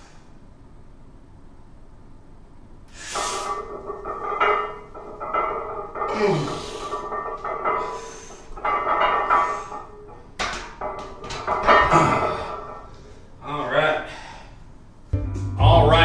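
Music playing, with a man's loud breaths and strained grunts coming about every second and a half during a heavy barbell back-squat set.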